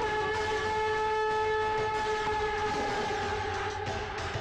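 One long, steady note held in the film's background score, sagging slightly in pitch near the end, like a dramatic sting.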